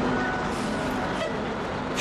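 Steady traffic noise of a busy city street, with a few faint held tones mixed in.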